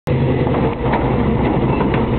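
Classic Ford Mustang fastback's V8 running at low speed as the car rolls slowly past, a steady, deep rumble.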